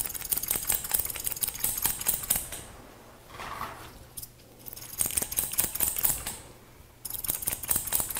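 Barber's scissors snipping hair in quick runs of metallic clicks, in three bursts, with a softer rustle in the gap between the first two.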